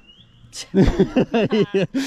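A person's voice in a quick run of short, rising and falling syllables, starting about half a second in, after a brief high rising chirp.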